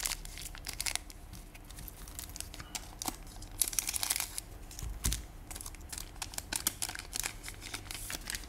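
Foil booster pack torn open and crinkled by hand: a run of sharp crackling crinkles, densest about halfway through.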